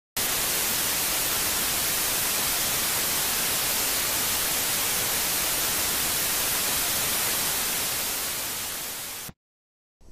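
Loud, steady hiss of white-noise static, like an untuned television. It starts abruptly, fades over its last second or so, and cuts off suddenly about nine seconds in.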